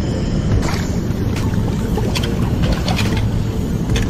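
Steady rushing of the spillway's turbulent water, a continuous low rumble, with wind buffeting the microphone.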